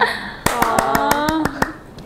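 A young woman's voice in a playful sing-song, over a quick run of about seven sharp clicks in just over a second; it drops to a lull near the end.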